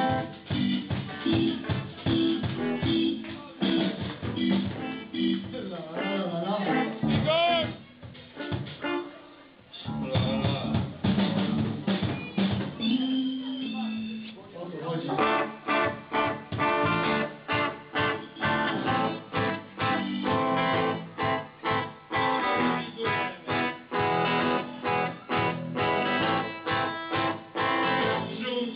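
Live punk rock band playing: the drum kit's snare and bass drum drive the beat, with a brief quieter dip near the middle. The rest of the band comes in for a dense, even rhythm through the second half.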